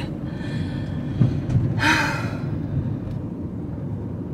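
Low, steady engine and road rumble inside a Citroën van's cabin as it drives slowly, with a short breathy gasp or exhale about two seconds in.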